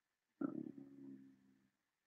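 A faint, brief low hum of a person's voice, lasting under a second and starting about half a second in.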